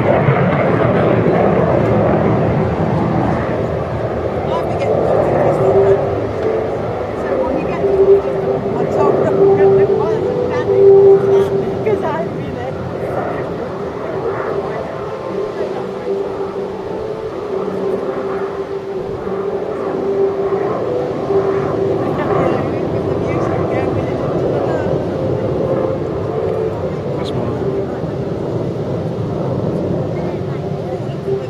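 Hawker Hunter F58A jet engine heard at a distance: a steady rumble with a held tone, swelling a little around ten seconds in.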